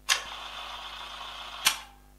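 Camera-style mechanical sound: a sharp click opens a steady whirr lasting about a second and a half, which ends in a second sharp click.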